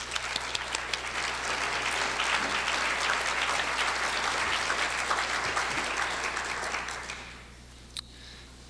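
Audience applauding in a hall, a dense patter of many hands clapping that dies away about seven seconds in.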